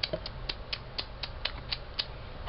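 Plastic jointed legs of a fashion doll clicking as the doll is walked by hand: an even run of sharp clicks, about four a second.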